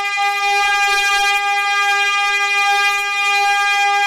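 A single bright, buzzy note held steady on a reed keyboard instrument, with no change in pitch or loudness.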